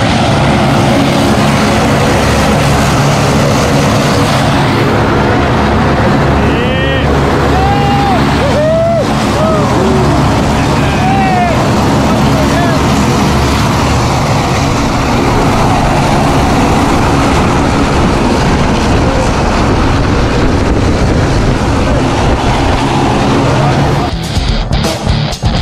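Jump plane's propeller engine running steadily at a loud, even level, with brief raised voices over it.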